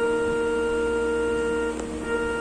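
Portable electronic keyboard sounding one held note that stops shortly before the end with a small click; a child is pressing the keys one at a time.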